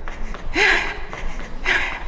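A woman's heavy breathing from exertion during a high-intensity cardio exercise: two loud, breathy exhalations about a second apart, the first with a short voiced edge.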